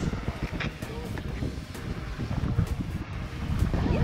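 Wind buffeting the camera microphone in uneven gusts over the steady rush of water pouring over a dam spillway.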